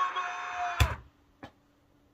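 A man's long held hum, cut off just under a second in by a sharp click, probably a mouse click, followed by near silence with one more faint click.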